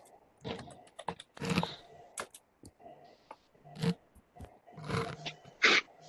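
Scattered clicks and short rustling bursts from participants' open microphones on a video call, the loudest near the end.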